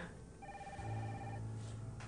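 A faint steady tone, several pitches held together for about a second and then cut off, over a low hum that goes on past it.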